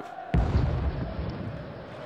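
A sudden deep boom about a third of a second in, dying away over a second or so, standing for the first explosion outside the stadium.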